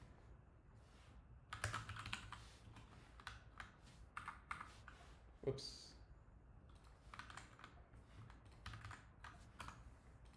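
Faint computer keyboard keys being pressed in several short clusters of clicks, as keyboard shortcuts are tried to switch windows.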